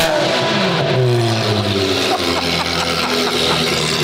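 Ferrari 360 Challenge Stradale's V8 dropping back from a sharp rev, its pitch falling over the first couple of seconds before it settles into a steady idle.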